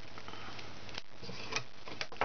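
A few faint clicks and light handling noise as a rubber loom band is stretched and double-looped onto the plastic pegs of a Rainbow Loom, over steady background hiss.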